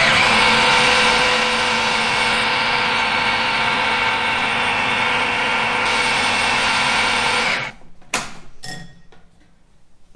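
Philips food processor motor running steadily with a whine, churning a thick paste of dates, hazelnuts, cacao and almond milk. It cuts out about three-quarters of the way through, followed by a few light clicks and knocks.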